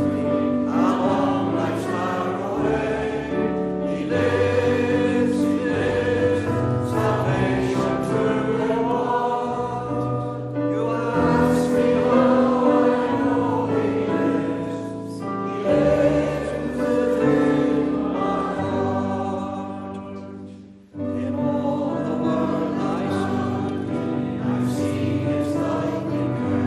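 Church congregation singing a hymn together with instrumental accompaniment. The sound drops away briefly about 21 seconds in, then the singing picks up again.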